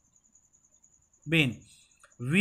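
A cricket chirping faintly in a high, rapidly pulsing trill that runs on steadily, with a short spoken syllable over it a little past halfway.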